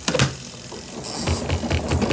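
Sharp clicks from a washing machine's timer knob being turned, then the machine starting its rinse cycle with a low rhythmic thumping, about four or five a second.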